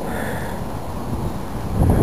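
Wind on the microphone: a steady low rumble that grows louder in a gust near the end.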